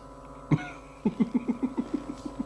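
A man laughing briefly: one sharp vocal sound about half a second in, then a quick run of short 'ha's, about six a second.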